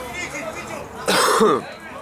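Voices shouting on a football pitch, players and spectators calling out, with one loud, harsh vocal outburst about a second in.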